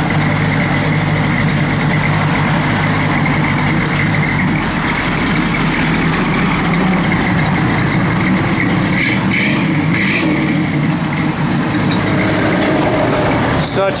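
A 1966 Chevrolet Malibu's 327 cubic-inch V8 idling steadily through Flowmaster dual exhaust, with a slight lope from the cam working.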